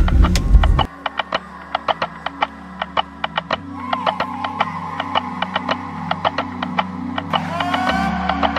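Background music: a quiet track with a fast, even ticking beat over low held notes, the low notes swelling about halfway through. It comes in about a second in, after a loud low rumble cuts off.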